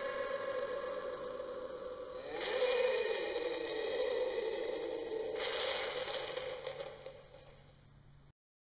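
An added eerie sound effect: a held tone that dips and slides downward in pitch, with two hissing swells, fading out near the end.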